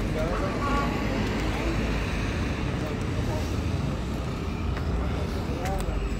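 Steady rumble of street traffic noise, with indistinct voices talking just after the start and again near the end.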